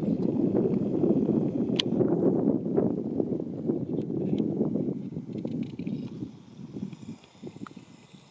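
Wind buffeting the camera microphone: an irregular low rumble that dies away over the last couple of seconds, with a single sharp click about two seconds in.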